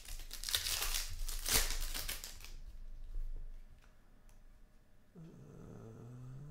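Trading card pack wrapper crinkling and tearing as it is ripped open, for the first two and a half seconds, followed by quieter handling with a few faint clicks.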